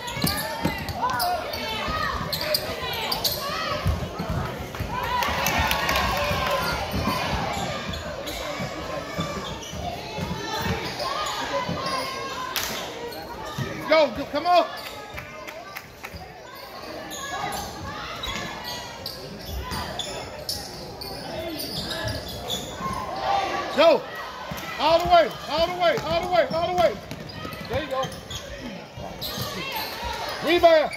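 A basketball bouncing on a hardwood gym floor during play, repeated thuds with the echo of a large gym, with voices calling out over it.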